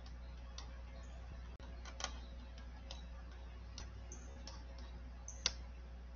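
Quiet room tone with a steady low hum and a handful of faint, scattered clicks, the sharpest about two seconds in and shortly before the end.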